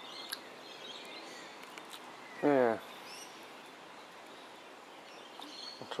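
Quiet outdoor background with faint, high bird chirps. About two and a half seconds in, a man's voice makes a short wordless sound that falls in pitch.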